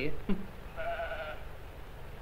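A sheep bleating once, a short wavering call about a second in, heard on an old film soundtrack with a steady background hiss.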